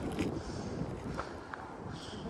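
Low outdoor background noise with a few faint scuffs of sneakers on a dirt path as a person shifts and swings her arms.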